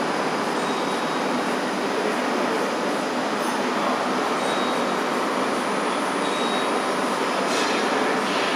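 Steady machine-shop noise: an even, unchanging mechanical rush from a large milling machining centre standing by, with no distinct cutting strokes, knocks or voices.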